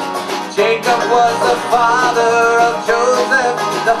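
Live acoustic guitar and banjo playing a bluegrass-style song, with a man singing over them.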